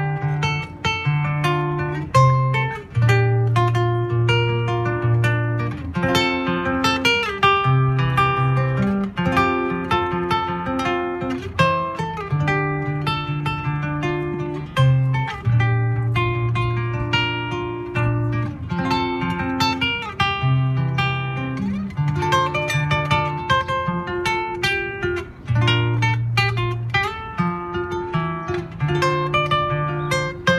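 Acoustic guitar played live close to the microphone, strummed and picked chords in a steady, flowing tune, with a deep bass note changing every second or two.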